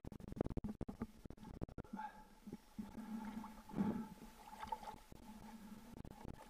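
Water splashing and sloshing against a camera at the surface as a diver swims, towing floats: a quick run of crackling splashes for the first couple of seconds, then irregular sloshing with a louder splash near the middle, over a faint steady hum.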